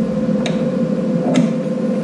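Vulcan Omnipro 220 welder, switched on, running with a steady hum, with two sharp clicks about a second apart as the ground-clamp cable plug is pushed in and twisted into its front socket.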